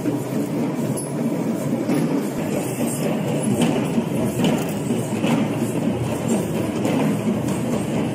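Traditional Sri Lankan procession drums played by a marching drum troupe: a dense, loud, continuous drumming rhythm with regular sharp accents a little under once a second.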